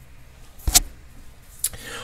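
Two short clicks over faint room noise: a louder one with a low thump about two-thirds of a second in, and a fainter, sharper one near the end.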